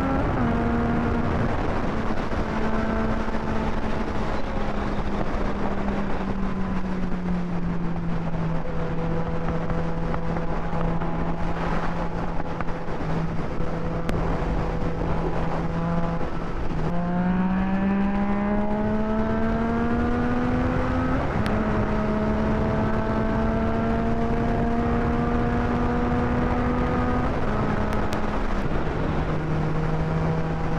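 Yamaha sport motorcycle's engine at highway speed under a steady rush of wind noise. The engine note holds, sinks as the bike eases off through the middle, then climbs steadily as it accelerates. It drops in a step at an upshift about two-thirds through and steps lower again near the end.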